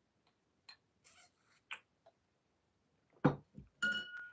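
Drinking through a straw from a glass, with a few faint clicks and a short sip, then a dull thump and the glass set down on a hard surface with a sharp, briefly ringing clink near the end.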